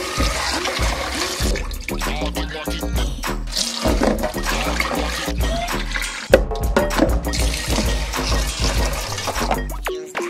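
Tap water running into a rice cooker's inner pot as rice is rinsed and swished by hand, with the rinse water poured off. Background music with a steady beat plays throughout.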